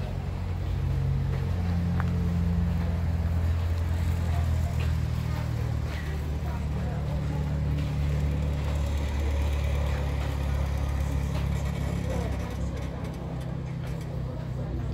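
A steady low mechanical drone, several low hums that swell and fade every few seconds, with faint background voices.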